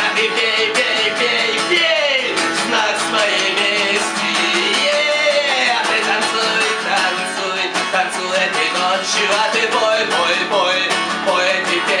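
Acoustic guitar strummed steadily, with a man's voice singing loudly over it.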